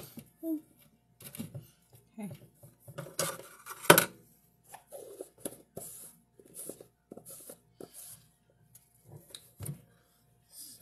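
A spoon scraping and clinking inside a jar of almond butter in short, irregular strokes, with one loud sharp clink about four seconds in. A woman's brief murmurs are heard between the strokes.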